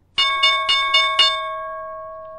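Trading platform's chart-alert chime: a bell-like tone struck about five times in quick succession, roughly four a second, then left ringing and slowly fading. It signals that a price alert on the SPY chart has triggered.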